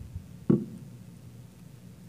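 A single short knock about half a second in, over a steady low hum, as the laptop at the lectern is worked to try to play a song that does not come up.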